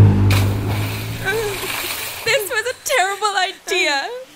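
A car's low engine hum as it drives through a puddle and throws up a loud splash of water lasting about two seconds. Then, from just past halfway, a voice makes short wordless cries that rise and fall in pitch.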